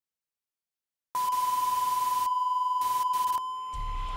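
Television test-pattern sound effect: a steady high beep over static hiss, starting suddenly about a second in after dead silence. The hiss cuts out briefly twice, and a low rumble comes in near the end.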